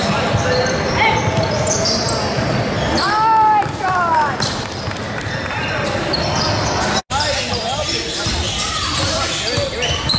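Indoor basketball game on a hardwood court: the ball bouncing, sneakers squeaking, and players and spectators calling out, all echoing in a large gym. The sound drops out completely for an instant about seven seconds in.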